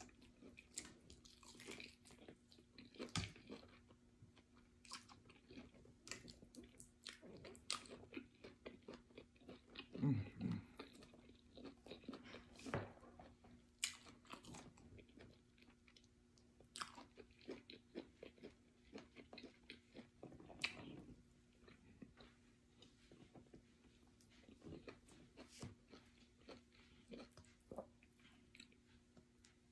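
Faint close-up eating sounds: chewing, with many small wet mouth clicks and smacks scattered throughout, as fufu with ogbono soup is eaten by hand. A short low sound comes about ten seconds in.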